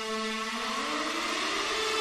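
Song intro: a held synthesizer chord with a rising pitch sweep and a swelling whoosh, building steadily in loudness.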